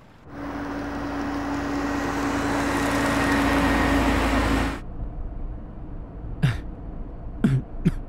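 A car driving past: a steady rush of engine and road noise that swells over about four seconds and then cuts off sharply. Then a man coughs three times, short and sharp.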